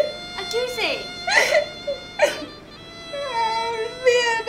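A woman crying: three sharp, gasping sobs about a second apart, then a drawn-out wavering wail near the end.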